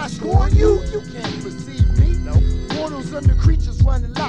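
Underground Bay Area hip hop track from a 1996 cassette: a rapper's voice over a beat with a deep, repeating bass drum and high ticking percussion.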